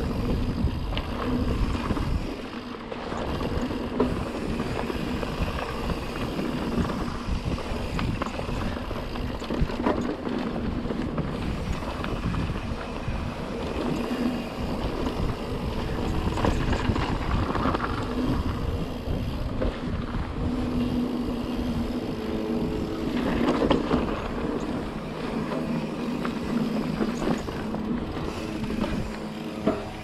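Pivot Trail 429 mountain bike riding a rocky dirt singletrack: wind buffeting the handlebar camera's microphone over the rumble of tyres on dirt and rock, with a few sharp knocks as the bike hits rocks.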